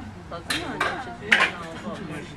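Three sharp clinks or knocks, the loudest a little past the middle, over people talking.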